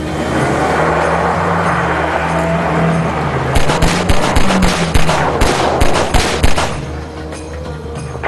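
A car engine revving and tyres crunching over gravel as a car pulls in. About three and a half seconds in, a long run of rapid gunfire starts: many shots over about three seconds, the loudest part. Background music plays throughout.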